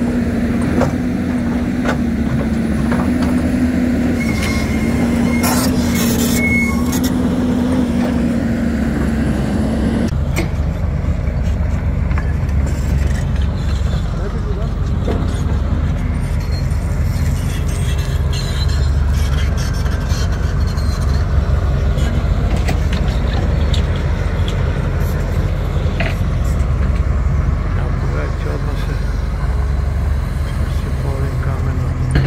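Engines of heavy road-construction machinery running steadily: a held engine hum for about the first ten seconds, then, after an abrupt change, a deeper, steady low drone.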